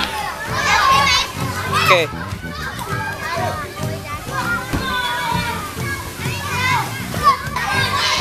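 Young children talking and calling out, several voices overlapping.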